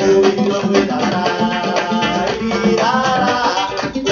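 A Brazilian song playing from a vinyl record on a home turntable, heard through a bookshelf loudspeaker in the room.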